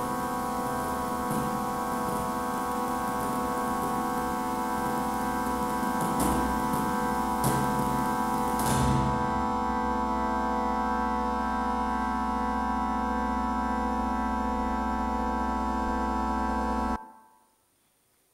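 Electronic soundtrack of an audiovisual art installation: a dense, steady drone of many held tones over a low hum, with brief flurries of noise in the first half, stopping abruptly about a second before the end.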